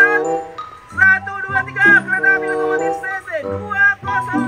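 Background music: a melody over held low chords.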